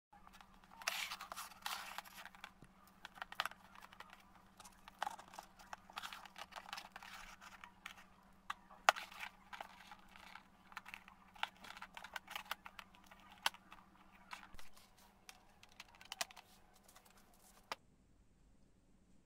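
Thin plastic cup and its attached wires being handled: irregular clicks, taps and crinkling of plastic, over a steady low hum.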